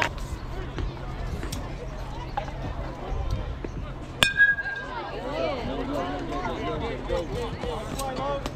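A metal baseball bat striking the ball about four seconds in: one sharp ping with a brief ringing tone. Voices rise right after the hit.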